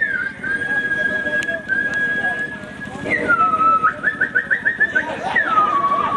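A tune whistled into a microphone: a long held high note, then, about halfway through, a drop in pitch into quick trilled notes about five a second, and another downward slide into more quick notes near the end.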